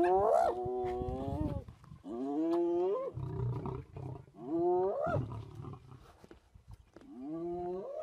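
Hyena giving four rising, whoop-like calls, each about a second long and spaced a couple of seconds apart, with a low growl between the second and third.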